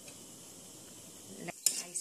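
Cashews frying in ghee in a nonstick kadai: a faint steady sizzle. Near the end a metal spoon clinks and scrapes against the pan a few times.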